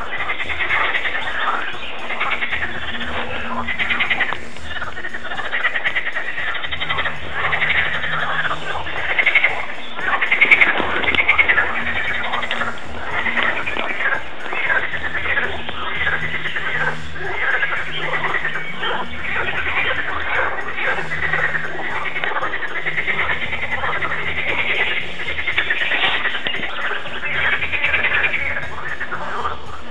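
A dense chorus of croaking frogs that goes on without a break, with the steady repeating bass line of background music underneath.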